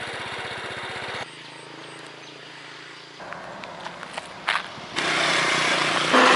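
A small motorbike engine idling with a fast, even beat for about a second, then an abrupt cut to quieter roadside sound with a low steady hum. Near the end a louder rush of road noise comes in.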